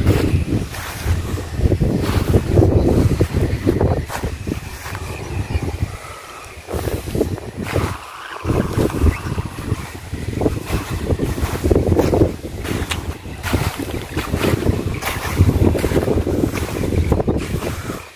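Wind gusting across the phone's microphone, a loud, uneven low rumble that eases briefly around six and again around eight seconds in.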